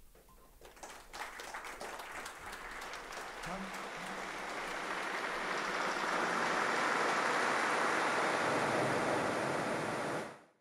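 Applause: scattered claps about a second in that build into steady, louder clapping.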